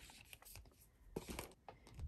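Faint rustling and light scraping of packaged paper-craft packs being handled and slid over one another, a little louder just past a second in.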